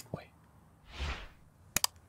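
A soft whoosh that swells and fades, then two sharp clicks close together near the end, typical of the sound effects of an animated like-button overlay.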